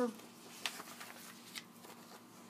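A pause in speech: faint room tone with a low steady hum and a couple of soft ticks.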